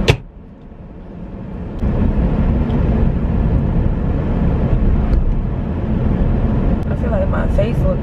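A sharp click at the start, then a steady low rumble of road and engine noise inside a moving car's cabin, swelling back up over the first two seconds.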